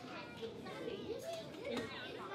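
Background chatter of many children's voices overlapping in a classroom.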